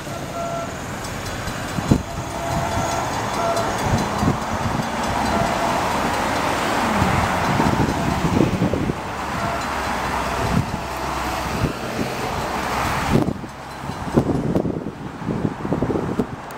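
NJ Transit commuter train approaching slowly toward a grade crossing, its rumble mixed with steady wind noise on the microphone.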